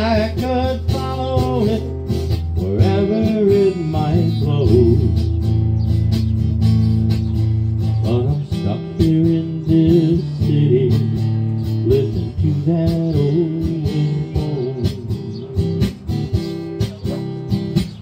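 Acoustic guitar strummed in a slow country ballad, with a man singing drawn-out, gliding notes over it.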